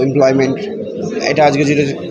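A man speaking into press microphones, his talk broken by short pauses.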